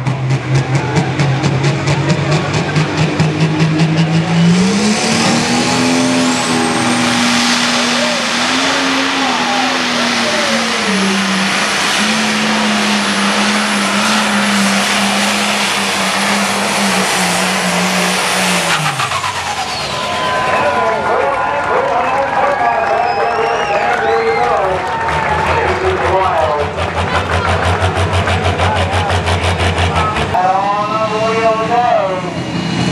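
A pro stock pulling tractor's diesel engine idles, then runs up to high revs about four seconds in and holds there under load while pulling the sled for roughly fifteen seconds. About nineteen seconds in the revs drop off suddenly, and it settles back to a low, steady idle.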